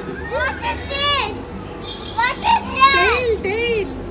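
Children's high-pitched voices calling out excitedly in two spells of short rising-and-falling shouts and chatter, over a low steady hum.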